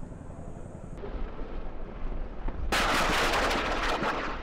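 Low rumble of military helicopters, then, about two-thirds of the way in, a loud sustained burst of rapid automatic gunfire from a live-fire drill.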